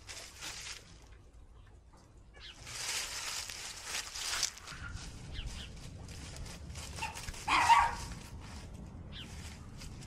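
Feet and hooves shuffling through dry leaves, with a dog barking once about three-quarters of the way through, the loudest sound.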